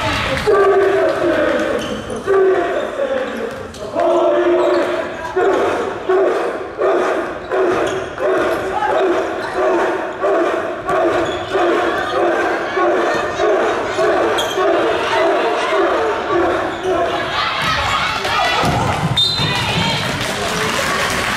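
Basketball dribbling on a hardwood gym floor, under many voices of team supporters chanting in unison in a steady, repeating rhythm in a large gymnasium.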